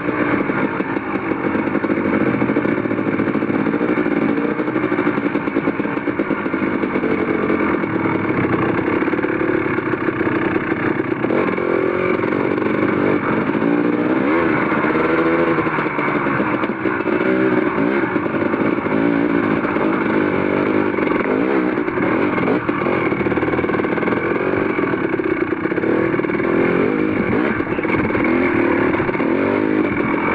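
Dirt bike engine running continuously while being ridden, its pitch rising and falling again and again as the throttle opens and closes at low trail speed.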